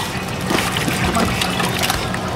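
Lake water splashing and dripping as a wet dog is lifted up a boat's swim ladder out of the water.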